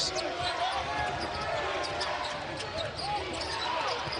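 Basketball dribbled on a hardwood court during live play, with a few sharp bounces in the first second or so, over the voices of the arena crowd.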